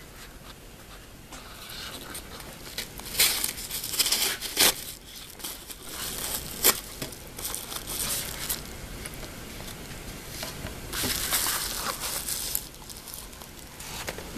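Padded paper mailer being torn open and handled: paper tearing and crinkling in several bursts, with a few sharp clicks.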